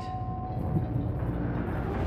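A low, steady rumble that slowly builds, with the last of two held chime tones dying away in the first half second.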